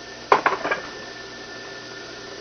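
A short clatter of several quick knocks and clinks, about a third of a second in, as the wooden block studded with nails is handled and set down.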